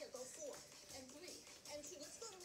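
A faint voice talking, with quiet background music underneath.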